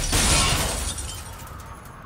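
Glass shattering in a car crash: a last burst of breaking glass just after the start that fades away over about a second and a half.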